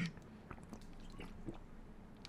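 A man sipping and swallowing water close to the microphone: faint, scattered mouth clicks and wet gulping sounds.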